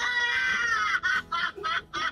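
A woman's long, high-pitched squeal of excitement lasting about a second, breaking into quick bursts of laughter.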